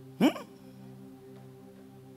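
A man's voice gives one short, sharp exclamation rising in pitch about a quarter-second in, over a soft, sustained keyboard chord held underneath.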